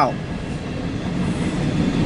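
CSX mixed freight train rolling past, its cars on the rails making a steady noise.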